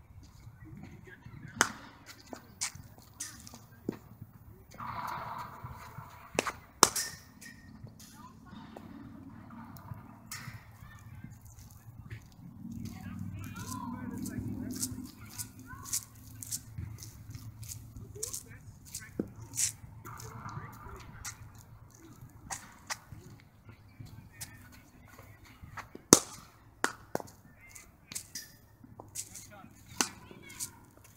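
Cricket ball cracking off a bat: two loud, sharp strikes, one about seven seconds in and one near the end, with fainter clicks between. Distant voices can be heard.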